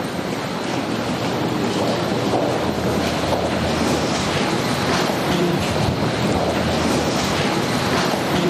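Steady, loud rushing noise with faint voices beneath it.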